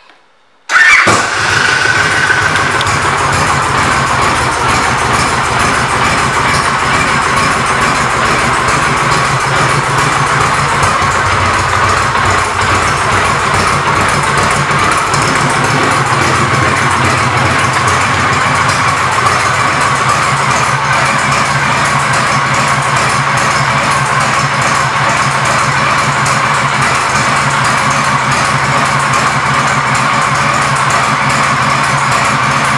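Victory Kingpin's 92 cubic inch V-twin, fitted with Victory performance pipes, comes in loud and sudden about a second in, then idles steadily.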